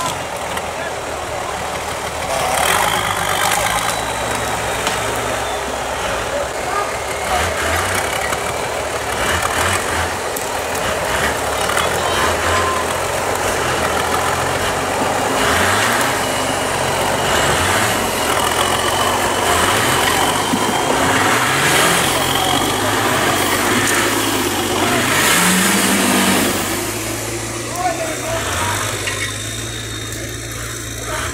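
Off-road 4x4 engine revving up and down again and again while crawling over rocks in a gully, the pitch rising and falling with each push of throttle. People talk in the background.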